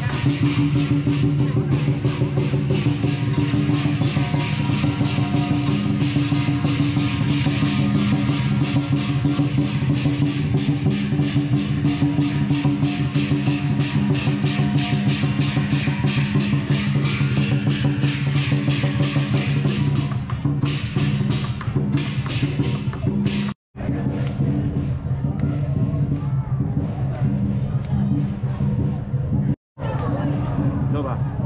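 Lion dance percussion: a large drum beaten in a fast, steady pattern with hand cymbals clashing over it, loud and continuous. The sound cuts out briefly about two thirds of the way in and comes back thinner, with less cymbal.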